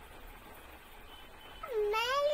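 Mostly faint room noise, then near the end a toddler's high-pitched vocal sound that dips and then rises in pitch.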